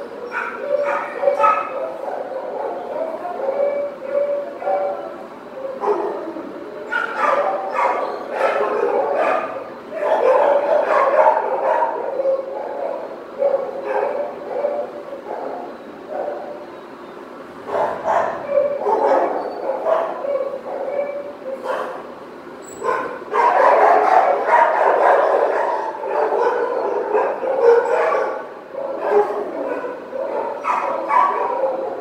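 Dogs in a shelter kennel block barking and yipping, with some whimpering between barks. The barking runs on without a break and is busiest in two stretches, one before the middle and one near the end.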